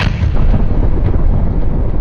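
Explosion sound effect: a sudden blast, then a loud, sustained low rumble.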